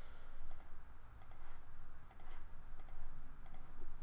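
Computer mouse buttons clicking, a string of separate clicks about half a second apart, as PCB traces are routed by hand. A low steady hum runs underneath.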